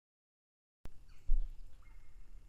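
Audio dropout on a live stream with an unstable connection: dead silence, then the sound cuts back in with a click, followed by faint outdoor ambience and a low thump on the microphone about halfway through.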